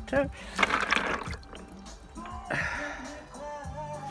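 Water splashing as a stone is dipped in a cup to wet it: a short splash about half a second in and a softer one just past halfway, over background music with singing.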